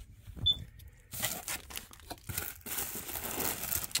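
Plastic packaging, a zip-lock bag and bubble wrap, crinkling and rustling as it is handled, starting about a second in after a few light handling clicks.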